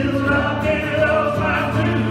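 Live worship song: several voices singing together over a strummed acoustic guitar, at a steady level.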